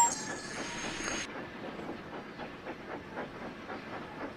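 A train running along the track with an even, rapid clatter of wheels over the rail joints. A brief sharp click right at the start is the loudest sound.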